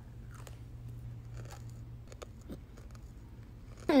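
A person chewing a small ball-shaped gummy candy: faint, irregular mouth clicks, over a low steady hum.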